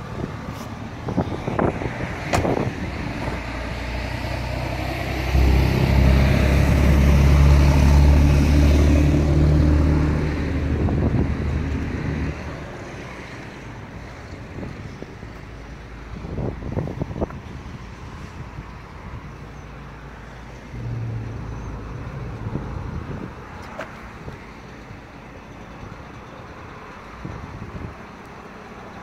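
A road vehicle passing by, with engine rumble and tyre noise that build and are loudest from about five to twelve seconds in, then fade to quieter traffic background with a few light knocks.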